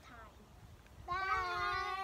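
A young girl's voice holding one long, steady high note, starting about a second in.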